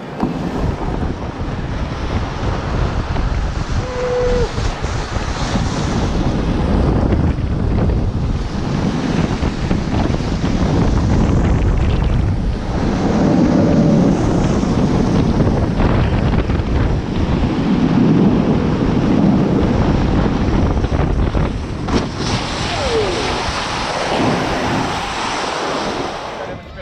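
Wind rushing over the microphone with a snow tube sliding and rasping over groomed snow on a ride down a tubing lane. The rush builds over the first couple of seconds, is loudest through the middle, and eases a little near the end as the tube slows.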